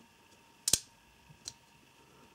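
CRKT Persian frame-lock folding knife clicking as it is worked one-handed: one sharp metallic click about two-thirds of a second in, then a lighter click about a second later.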